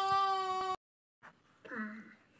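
A long drawn-out vocal cry held on one steady pitch that cuts off abruptly under a second in, followed after a short gap by brief speech near the end.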